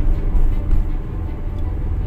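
Steady low rumble of wind and road noise from a moving vehicle.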